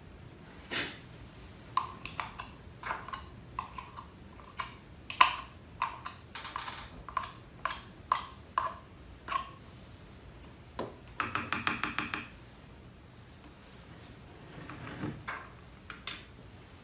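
A white plastic spoon scrapes and taps thick white glue out of a plastic measuring cup into a bowl, making a series of light clicks and taps, with a quick rattling run of taps about eleven seconds in.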